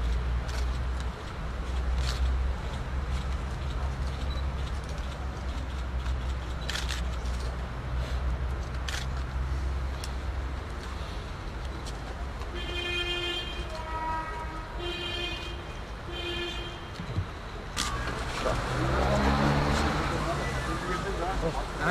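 Outdoor crowd and street ambience with a steady low traffic rumble and scattered faint clicks. Past the middle come three short, held, pitched calls, and voices rise near the end.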